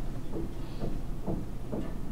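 Steady low hum of room background noise, with soft low bumps about every half second.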